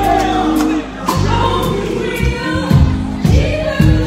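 Gospel choir singing live with a band, keyboards and a steady beat underneath.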